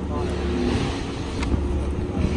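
Steady low outdoor rumble with faint voices in the background, and a single brief click about one and a half seconds in.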